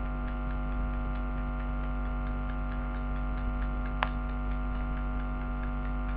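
Steady electrical mains hum with a stack of even overtones, with one sharp click about four seconds in.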